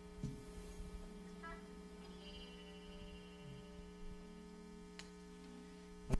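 Low steady electrical hum from a live sound system, with a faint click about five seconds in.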